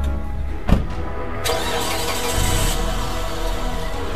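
A car door slams shut under a second in. About half a second later the car's engine cranks and starts. Background music plays throughout.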